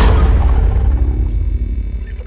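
Tail of an intro sound effect: a low rumble that fades out steadily after its higher part drops away near the start.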